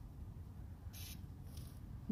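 Faint outdoor ambience with a steady low wind rumble on the microphone, broken by a brief high hiss about a second in and a fainter one just after.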